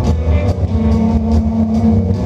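Live instrumental rock from an electric guitar and a drum kit, played loud, with a held note sustaining from a little after the first half-second to near the end over drum and cymbal hits.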